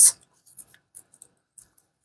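A few faint, crisp ticks and crackles spread over about a second and a half as brittle dried flower petals are broken up and handled.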